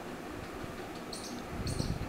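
Steady low background hiss, with a few faint, short, high chirps in the second half.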